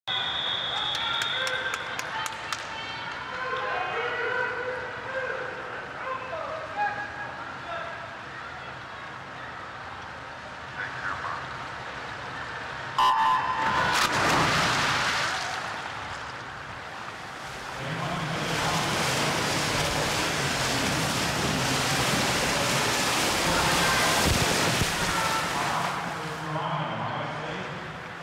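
Swim-meet start: arena murmur, then about 13 seconds in the electronic starting signal sounds. Right after it comes a loud, steady roar of crowd cheering and splashing as the swimmers race; it dips briefly and swells again from about 18 seconds.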